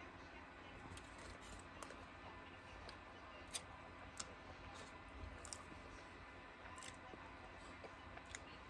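Faint, scattered clicks of a man chewing a bite of burrito, over quiet room tone.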